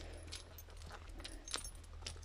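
Faint, scattered light clinks and rustles from a dog being walked on a leash over dry leaves, with one sharper click a little past the middle.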